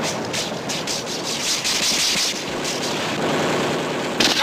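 Film battle sound effects: a dense, steady wash of gunfire and battle noise with rapid, irregular sharp reports.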